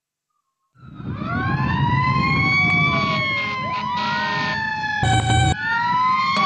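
Silent for almost a second, then fire-engine sirens start wailing, several rising and falling tones overlapping over a low rumble. About five seconds in, a short electronic robot beep sounds over them.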